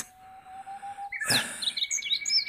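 Birds chirping: quick high calls start a little past halfway, over a steady high trill.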